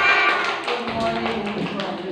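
Voices in a room with a few light taps or hand claps mixed in.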